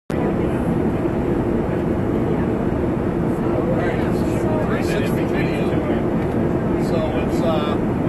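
Steady, loud cabin noise inside a small passenger airliner, with faint murmured conversation of passengers over it.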